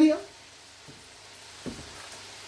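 Silicone spatula stirring a thick tomato and pork stew in a stainless steel pot, quietly, with one sharp knock about a second and a half in.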